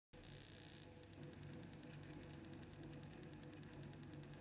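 Near silence: faint room tone with a low steady hum and a fast, faint high ticking.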